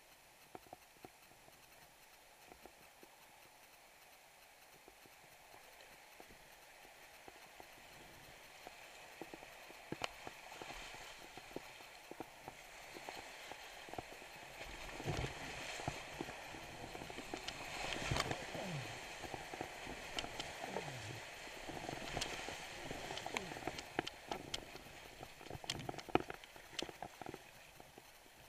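Rushing whitewater of a creek rapid, faint at first and growing much louder about halfway through as the kayak runs into it. Through it come many sharp knocks and splashes from paddle strokes and water slapping against the camera.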